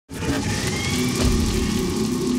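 Opening title-sequence soundtrack: an engine-like drone with a slowly rising whine under music, and a low thump a little over a second in.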